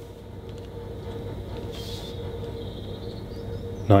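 Steady low hum of room tone, with a faint brief rustle from a card LP sleeve being handled about halfway through.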